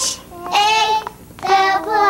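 Young children singing in short sustained phrases, three of them with brief gaps between.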